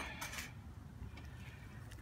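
Faint, sparse clicks of metal tongs handling charcoal briquettes, over a steady low background rumble.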